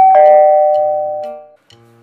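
An electronic two-note chime, a loud ding-dong: a higher note, then a lower one a moment later, ringing together and fading away over about a second and a half. Faint background music runs underneath.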